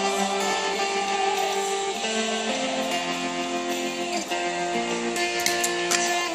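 Clean-toned electric guitar playing slow, held chords, moving to a new chord every second or two.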